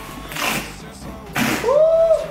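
Cardboard shipping boxes being torn open along their pull-tab tear strips: two short rips, about half a second in and again about a second and a half in, over background music.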